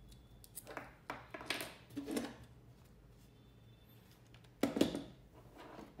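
Small plastic electrical parts handled by hand on a wooden table: a few light clicks and rattles as a part is opened up, then a louder knock a little after four and a half seconds in.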